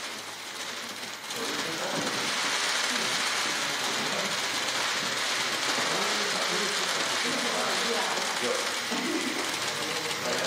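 Many press cameras' shutters clicking rapidly and without pause, a dense, steady clatter, with voices talking in the room underneath.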